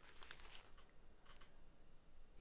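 Near silence: room tone with a few faint brief noises.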